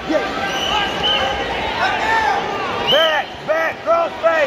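Coaches and spectators shouting across a large gymnasium during a wrestling bout, with a run of three or four short, sharp shouts from about three seconds in.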